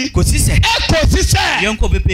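A man preaching fast and forcefully into a microphone over a PA, in a rapid rhythmic delivery.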